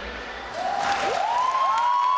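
Audience applauding and cheering as a dance routine ends, with high rising whoops starting about half a second in.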